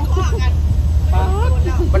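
People talking in Thai over a steady low rumble.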